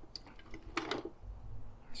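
Small metal tools clicking and clinking as a hand rummages in a toolbox drawer and lifts out a holder of bits and sockets. There is a short pitched sound just before a second in, then a low rumble of handling.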